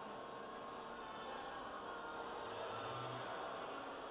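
Steady ambient noise of a large, near-empty indoor shopping mall: an even hiss with a faint hum and no distinct events.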